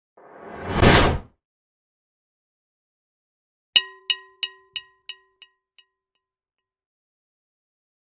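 Sound effects of an animated intro: a whoosh that swells and cuts off just after a second in, then a ringing metallic ding a few seconds later that repeats about three times a second and fades away over seven repeats, like an echo.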